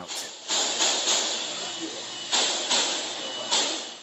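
Gunshots echoing through a large store, recorded on a phone: several reports come in two groups, about half a second in and again in the second half, each trailing off in a long wash of echo and hiss.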